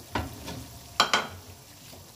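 Potatoes, onions and spices frying in oil in a karahi with a faint sizzle. A short knock comes just after the start, and a sharp double knock, the loudest sound, about a second in.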